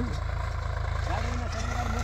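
Sonalika 745 tractor's diesel engine running steadily under load as it pulls a tillage implement across the field, heard as a low even rumble, with people talking in the background.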